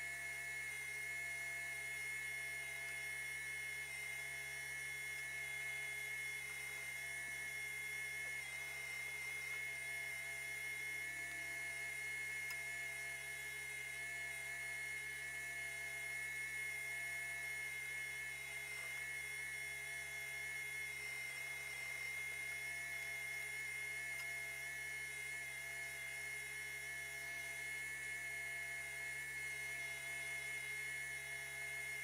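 Industrial sewing machine's electric motor running with a steady high whine and no needle rhythm.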